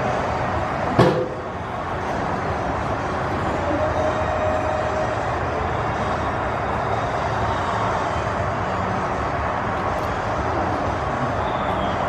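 Steady outdoor ballpark background noise with one sharp knock about a second in.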